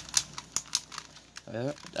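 A quick run of small plastic clicks and rattles from a Transformers Masterpiece Shockwave figure being handled as its torso is pulled up to free the waist joint.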